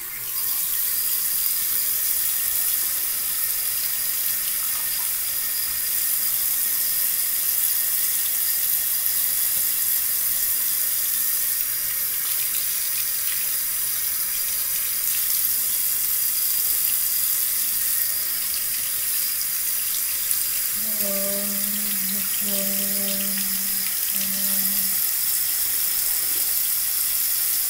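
Bathroom tap running steadily into the sink, turned on at the very start. Near the end, three short low tones sound over the water.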